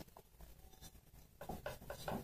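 Faint rubbing of hands pressing and smoothing pizza dough in a metal pizza pan, with a few short, slightly louder knocks near the end.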